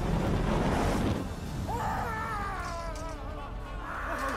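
A loud burst of noise in the first second, then several men crying out and wailing in pain as they are struck blind, over a dramatic film score.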